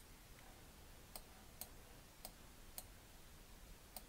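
About five faint computer-mouse clicks, spaced roughly half a second apart, over near silence while a map is zoomed in.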